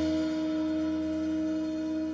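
Tenor saxophone holding one long, steady note over a sustained low note, in a slow, quiet passage of live small-group jazz with no drums sounding.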